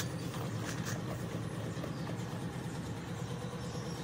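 A steady low hum like an idling engine, with faint scattered clicks of a goat chewing Oreo cookies in a metal basin.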